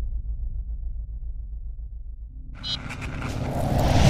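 Logo-sting sound design: a deep, steady rumble, joined about two and a half seconds in by a swelling whoosh that grows louder up to a peak at the very end, then cuts off.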